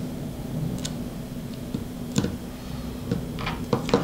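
A few light clicks and taps from hands handling a carbon-fibre drone frame while pushing a wire through it, with a small cluster of clicks near the end, over a steady hum.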